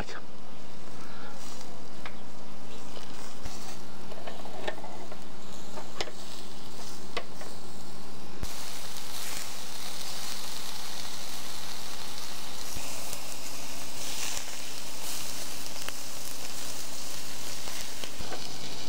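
Fish lula-kebabs on skewers sizzling over hot charcoal, with fat dripping from them onto the coals and a few sharp crackles. The sizzle turns brighter and more hissing from about eight seconds in.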